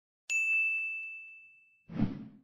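A single bright, bell-like ding from a logo sound effect. It strikes suddenly and rings out with a fading tone, followed near the end by a brief duller rush of sound.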